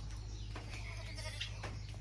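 Goats bleating faintly in the background, with a couple of soft clicks in the second half.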